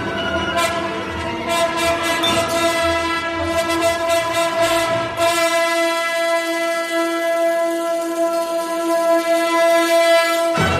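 Symphony orchestra playing 1970s modernist concert music: a single high note is held throughout. Sharp percussive strokes over the low instruments fill about the first five seconds. Then the low instruments drop out and the held note carries on over a bright shimmer.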